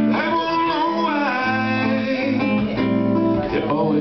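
Live song: a man sings a drawn-out, wavering note over a strummed acoustic guitar.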